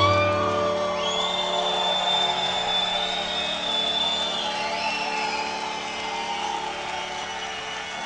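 Mohan veena's strings, sympathetic strings included, ringing on and slowly dying away after the piece's final upward slide, while the audience cheers and whoops, with a long high whistle about a second in.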